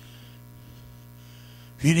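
Steady low electrical mains hum from the sound system, with a man's voice through the microphone starting near the end.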